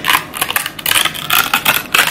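The paper tear strip of an Apple silicone case box being pulled off, ripping the seal: a quick run of small crackling tears and clicks.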